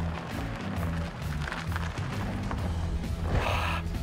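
Background music carried by a steady, stepping bass line, with a brief rush of noise a little over three seconds in.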